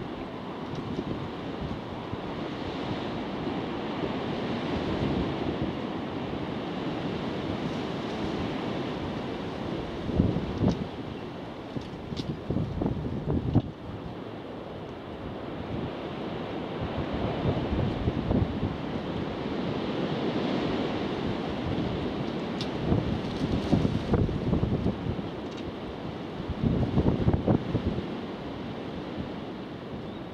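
Strong gusting wind buffeting the microphone in irregular surges, over the steady noise of an Antonov An-124's four turbofan engines as it lands.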